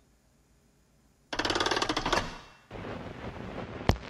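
Film projector starting up with a rapid mechanical clatter for about a second and a half, then running with a steady crackling hiss like an old film soundtrack. A single sharp click comes near the end.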